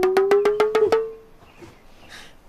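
A comic sound effect: quick wood-block-like clicks, about nine a second, over a tone that slowly rises in pitch. The clicks stop about a second in and the tone fades shortly after.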